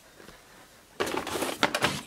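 Clattering and rustling of a box of nail-care supplies being handled, with small items knocking about. It starts abruptly about a second in, after a quiet moment.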